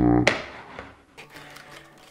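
A sharp click of a clear acrylic card insert snapping into place in a plastic binder-page pocket, ringing out with an echoing tail that fades over about a second, just after a brief low buzz.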